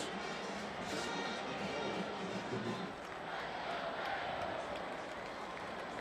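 Steady background noise of a large stadium crowd at a college football game, with faint music mixed in.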